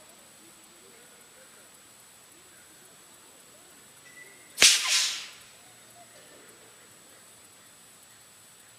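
Homemade pneumatic air cannon, built on a fire-extinguisher tank charged to about 100 psi, firing once about halfway through: a sharp pop followed by a rush of escaping air that dies away within about half a second.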